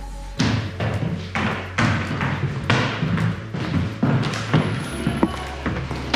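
Footsteps walking on a hard museum floor, about two steps a second, each a sharp thud, with a steady low hum or music underneath.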